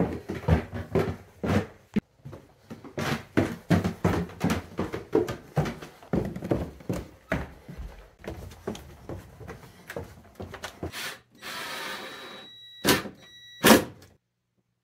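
Footsteps and handling knocks as someone walks over a wooden floor and stairs, an irregular run of thumps several a second. Near the end come a short hiss, then two sharp knocks with a brief ringing tone between them.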